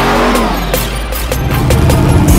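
A big-wheeled donk Chevrolet's engine revving hard during a tyre-smoking burnout, mixed with music that has a regular beat.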